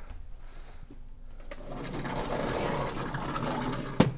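Chalk scratching on a blackboard in steady strokes, building up about a second and a half in.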